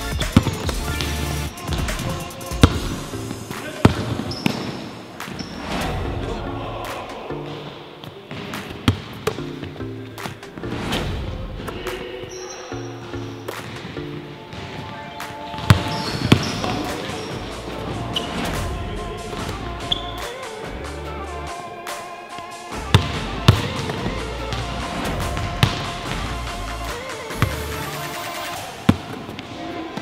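A basketball bouncing on a hardwood court during one-on-one play, heard as sharp, irregularly spaced bounces over background music.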